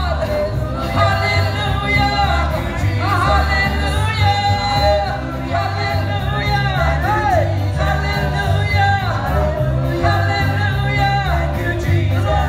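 Live gospel worship music: women sing lead into handheld microphones over an amplified band of electric guitar, bass guitar and drums keeping a steady beat.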